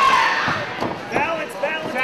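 Voices shouting at a cage fight, one call held at the start and more shouts in the second half, with a few dull thuds as the fighter on top punches down at his opponent on the mat.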